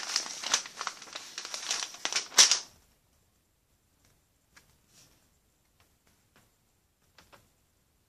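Paper instruction leaflet being unfolded and handled, a dense crinkling for about two and a half seconds, then near silence with a few faint ticks.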